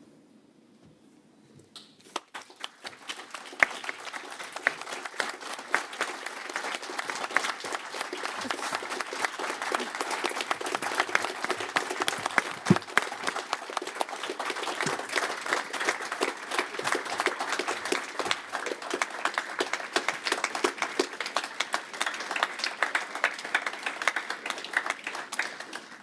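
Many people clapping together in a hearing room. It starts about two seconds in, after a brief hush, and goes on as steady applause until it stops near the end.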